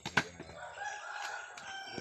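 A rooster crowing: one long crow starting about half a second in and lasting well over a second. It is preceded by a sharp knock just after the start.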